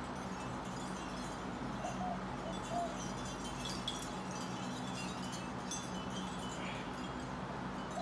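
Wind chimes ringing lightly and irregularly, a scatter of short high notes at several pitches, over a steady low hum.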